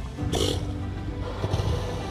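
A southern elephant seal's low, pulsing guttural call over background music, with a short hiss about a third of a second in.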